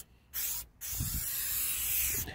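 Aerosol tire shine sprayed from a can onto a tire sidewall: a short spurt, then a steady hiss of spray from just under a second in.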